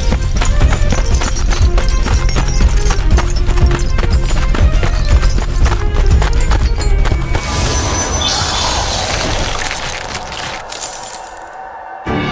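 Epic orchestral battle music with fast, driving percussion. About seven and a half seconds in, it gives way to a swelling rush of noise that fades and grows quieter towards the end.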